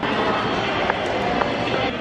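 A train running through the station: a steady noise with a couple of faint clicks about a second in.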